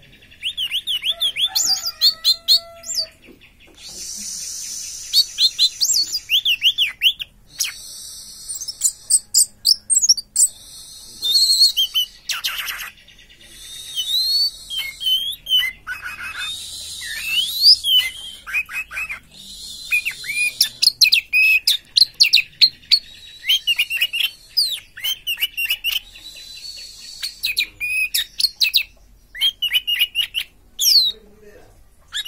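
Caged orange-headed thrush singing: a long, varied run of rapid chirps, whistled glides and chattering phrases, broken by short pauses.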